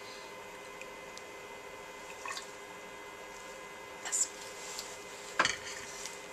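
Electrophoresis buffer trickling faintly from a plastic measuring cylinder into a gel tank, with a few small faint sounds along the way and one sharp knock near the end.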